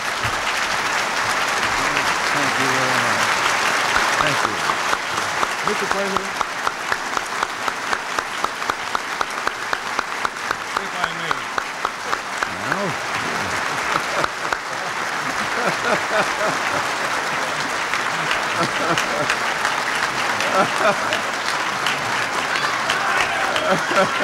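A large audience applauding at length, the clapping falling into a steady rhythm of about three claps a second for several seconds near the middle.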